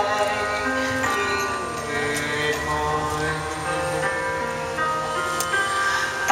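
A stage-musical song: a male singer holding long notes over a recorded musical backing.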